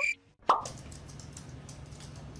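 A single short 'plop' sound effect with a quick falling pitch, about half a second in, followed by a faint steady low hum.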